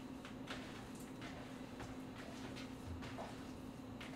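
Faint, scattered squishing and soft taps of hands working raw ground turkey in a mixing bowl to form patties, over a steady low hum.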